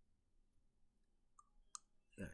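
Near silence: room tone, with two faint short clicks about a second and a half in.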